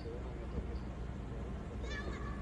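Children's voices shouting across an empty stadium, with a high-pitched rising call near the end, over a steady low rumble.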